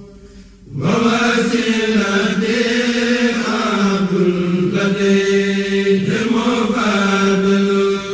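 A male voice chanting a devotional Islamic poem in long, held notes. It starts about a second in, after a brief quieter moment, and pauses briefly twice.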